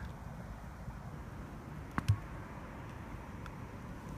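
A putter strikes a tennis ball once, about halfway through: a short sharp click with a soft low thud just after, over faint steady outdoor background noise.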